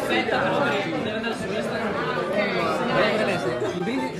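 Several people talking over one another in a lively group conversation.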